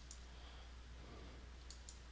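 Faint computer mouse clicks while a line is drawn in drawing software. There are two quick clicks near the start and two more near the end, over a low steady hum.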